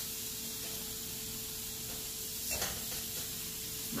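Sausage sizzling in a frying pan with a steady hiss, and a short louder sound about two and a half seconds in.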